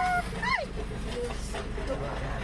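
A high shout held briefly, then a second short yell rising and falling about half a second in, over a steady low engine rumble in the street.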